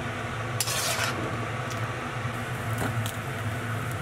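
Metal spatula scraping against a wok and clinking on a ceramic bowl as stir-fried tomatoes are scooped out: one scrape about a second in, then a few light knocks near the end. A steady low hum runs underneath.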